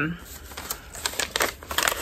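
Hands handling the yarn and its packaging in the lap, making a scatter of light, irregular clicks and taps.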